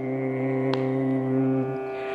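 A male voice singing Carnatic-style devotional music, holding one long steady note at the end of a phrase over a continuous drone. The held note stops shortly before the end and the drone carries on alone.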